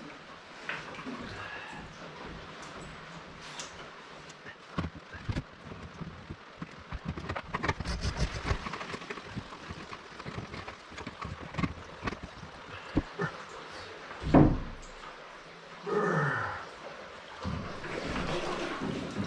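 Splashing and sloshing of a person wading through cold floodwater, with a man grunting and groaning at the cold twice near the end.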